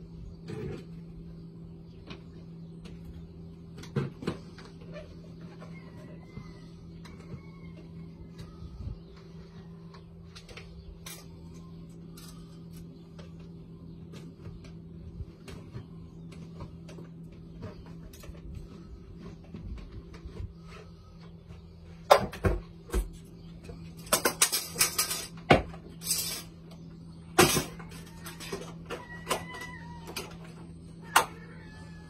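Plastic pond pump housing being handled and fitted back together: scattered clicks and knocks, with a burst of louder clattering and scraping near the end.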